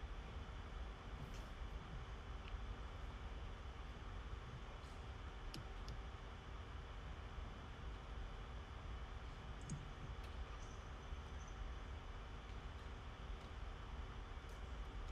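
Low, steady hiss with a few faint, scattered clicks.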